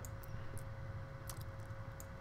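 Faint steady hum with a thin steady tone from the recording setup, and a few faint computer mouse clicks.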